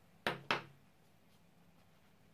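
Two short knocks of hard objects being handled, about a quarter second apart.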